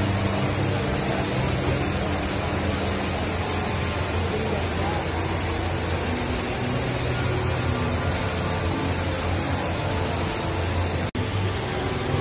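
Steady rushing of a large indoor waterfall, the Rain Vortex, pouring from the dome into its pool, with crowd chatter beneath. The sound drops out for an instant near the end.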